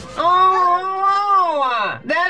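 A man's long, drawn-out exasperated yell, rising and then falling in pitch over nearly two seconds.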